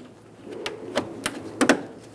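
Plastic push-pin retainer clips being pressed into the bumper and grille trim: a handful of short, sharp clicks as they snap into place, the loudest a little past the middle.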